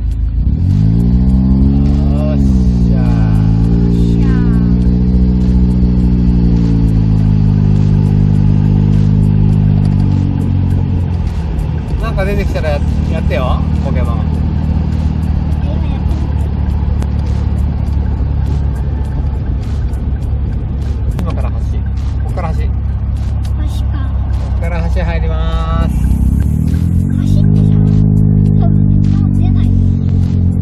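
Daihatsu Copen XPLAY's small three-cylinder turbo engine and its aftermarket Rosso Modello exhaust, heard from the open-top cabin while driving. The engine note rises and falls several times over the first ten seconds as the car pulls away through the gears, runs steady at cruise, then climbs again near the end. Voices talk over it.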